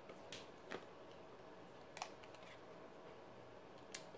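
Near silence with faint handling of tarot cards: a few soft clicks as a card is drawn, and a sharper tap near the end as it is laid down on the table.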